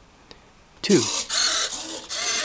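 Several small hobby servos whirring as they rotate the plywood segment faces of a servo-driven seven-segment display, flipping segments over to form a digit. The buzzing starts about a second in, with a brief break just before the end.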